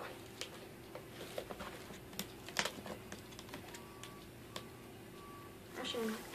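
Scissors cutting paper: a scattered series of sharp snips and small paper rustles.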